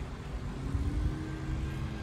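Street background of distant traffic: a low rumble with the faint, steady hum of a vehicle engine starting about half a second in.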